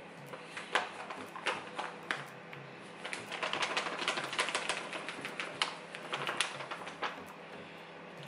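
A bag of flour crinkling and rustling as flour is poured from it into a large pot. There are scattered sharp crackles at first, then a dense run of crackling a few seconds in.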